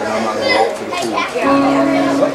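Chatter of several voices, children's among them, in a large room, with a steady held tone coming in about one and a half seconds in.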